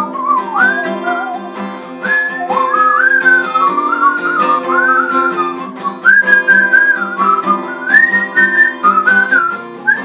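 A whistled melody over strummed guitar chords, an instrumental break with no singing. The whistling glides up and down in short phrases while the guitar keeps a steady strum.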